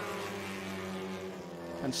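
Engine of a Honda Civic Type R TCR touring car, a turbocharged four-cylinder, running at high revs, held at a steady pitch as the car runs flat out.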